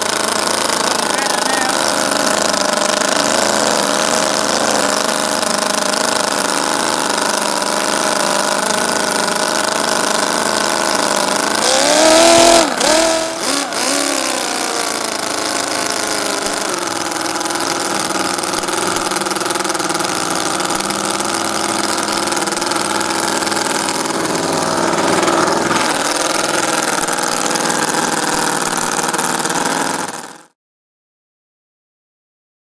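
Miniature hand-built Schillings V8 engine in a model drag car running steadily. About twelve seconds in it revs up briefly and drops back.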